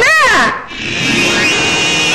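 A wavering cry whose pitch slides up and down breaks off about half a second in, followed by film background music with sustained string notes.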